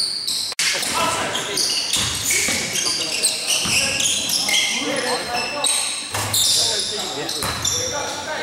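Basketball game play in a gym: sneakers squeaking on the hardwood court in many short high squeals, a basketball bouncing, and players' voices, all in the echo of a large hall. The sound cuts out for an instant about half a second in.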